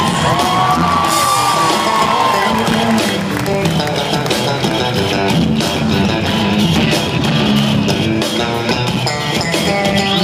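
Live rock band playing, electric guitars over bass and drums, recorded from among the audience. A high held note bends and fades over the first couple of seconds.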